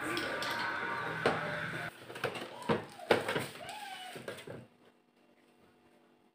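Plastic top control panel of an Aqua twin-tub washing machine being pried up and lifted off: handling noise with several sharp clicks as the clips let go, stopping about four and a half seconds in.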